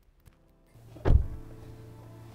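A car door shutting with a single heavy thud about a second in, followed by a steady low hum inside the cabin.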